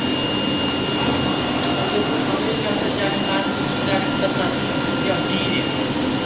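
Auto-feed flatbed cutting table running: a steady loud rushing hum from its vacuum suction bed, with a few constant high whine tones laid over it.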